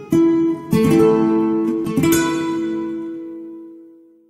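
Acoustic guitar strumming the closing chords of a song: three strums, the last chord ringing on and fading away near the end.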